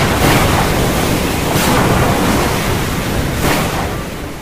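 Loud rushing storm noise of wind and surf, a stock sound effect, swelling in surges about every two seconds.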